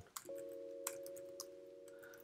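Faint steady hum made of several low tones, with a few soft computer-keyboard clicks as code is typed.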